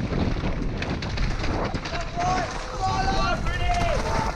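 Wind rushing over a helmet-camera microphone while a downhill mountain bike rattles and clatters at speed over a rough dirt trail. In the second half, three drawn-out shouted calls from voices cut through the wind.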